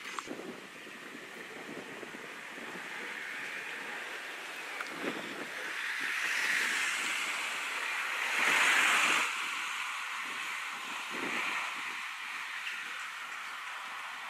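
Wind blowing: a rushing hiss that swells and fades, loudest about eight to nine seconds in.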